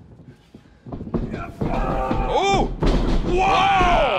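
A wrestler's body hitting the ring mat with a thud, followed by loud drawn-out shouts that rise and fall, one long falling cry near the end.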